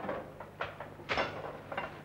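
About four short knocks and rustles, a little under half a second apart, as goods are handled and set down on a shop counter.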